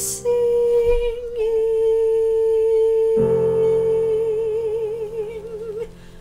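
A singer holds the last long note of the song over sustained piano, the vibrato widening toward the end. A new piano chord comes in about three seconds in, and the music fades away near the end.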